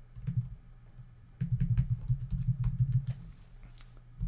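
Typing on a computer keyboard: a few separate keystrokes, then a quick run of keys from about a second and a half to three seconds in, with one last key near the end.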